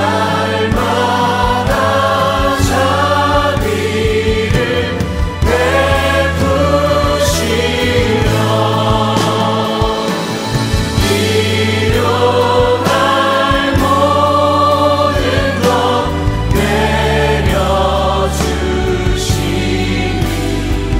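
A live worship band with a group of singers performing a hymn in Korean, the voices singing together over a steady bass line.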